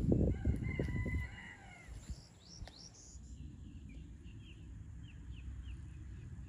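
A drawn-out bird call about a second and a half long, falling in pitch at the end. It is followed by a run of short, quick chirps from small birds.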